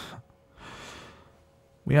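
A man's breathing close to the microphone: a short, sharp breath, then a longer, softer breath about half a second later, as he settles after crying.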